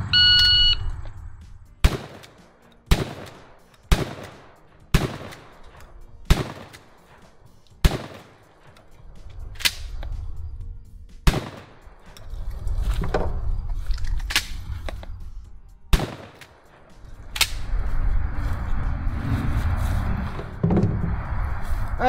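A shot timer beeps once, then a 12-gauge shotgun fires eight shots: the first six about a second apart, the seventh and eighth after pauses of roughly three and five seconds. A low steady rumble fills much of the second half.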